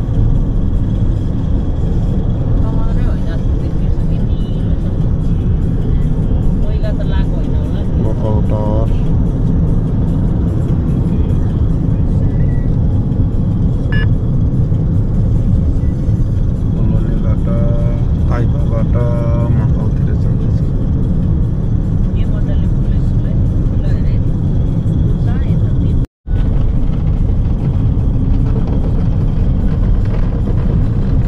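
Steady low rumble of a car driving, heard from inside the cabin, with brief faint snatches of voice or music over it. The sound cuts out for a moment about 26 seconds in.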